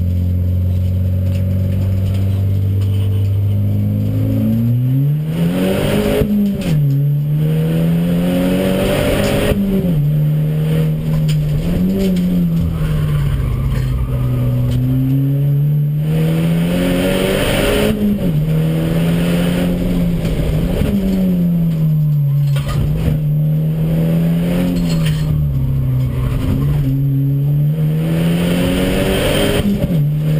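Audi DTCC race car's engine heard from inside the cabin, running steadily at low revs for about four seconds, then pulling away with its pitch climbing and dropping again and again as the car accelerates, shifts and slows through the corners of the track.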